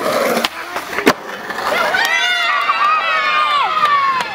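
Skateboard wheels rolling on a street surface, with a single sharp clack of the board about a second in. From about halfway through, a long drawn-out yell falls slowly in pitch.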